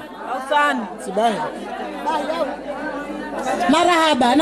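Several people talking at once, a low chatter of overlapping voices between the amplified microphone voice's lines.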